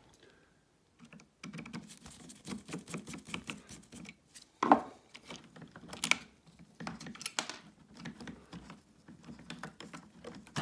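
Screwdriver working screws out of a cordless vacuum's plastic housing, with small clicks and rattles of the plastic parts being handled, and a couple of sharper knocks around the middle.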